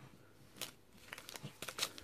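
Emergen-C drink-mix sachets crinkling faintly as they are handled and set down, a run of short crackles that starts about half a second in and is thickest near the end.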